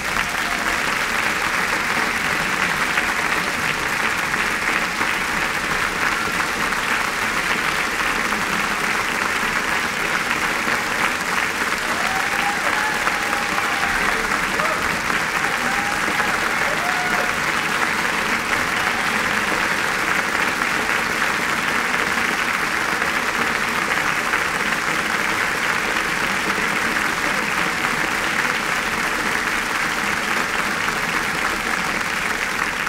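A large congregation applauding, rising at once to full strength and keeping up steadily, with a few brief voices calling out over it about halfway through.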